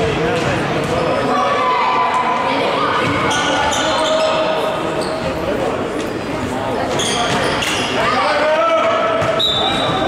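A futsal ball being kicked and bouncing on a wooden sports-hall floor, with players and spectators shouting. The sounds echo around the large hall.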